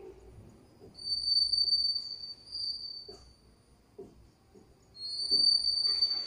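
A high, steady insect trill, heard twice: for about two seconds starting a second in, and again from about five seconds in. A few faint low knocks fall between the two trills.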